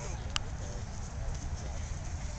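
Steady low rumble of wind on the microphone in an open field, with faint distant voices and one sharp click about a third of a second in.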